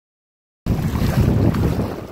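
Silence, then, about two-thirds of a second in, wind buffeting the microphone cuts in suddenly: a loud, heavy rumble with hiss above it.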